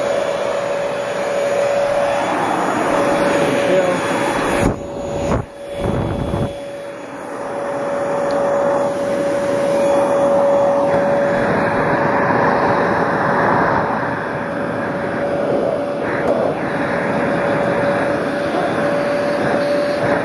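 Small Bissell vacuum cleaner running on carpet: a steady whine over a rush of air. About five seconds in, the sound dips and wavers for a second or so before settling back.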